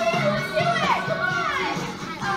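A song playing with children's voices calling out and singing along over it.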